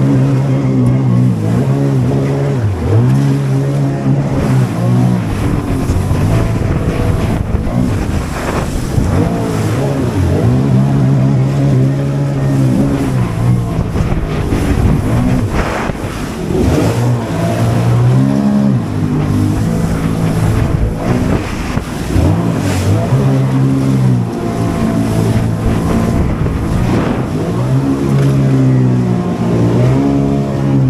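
Sea-Doo Spark Trixx jet ski's three-cylinder Rotax engine running hard at speed. Several times the engine note drops and climbs back as the throttle is eased and reapplied through turns. Water spray and wind hiss along with it.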